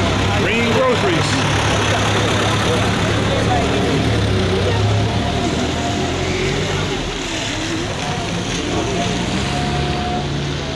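Small two-ton truck's engine running close by at low speed. Its steady low hum is strongest in the first few seconds and fades after about two-thirds of the way through, with voices of people in the street over it.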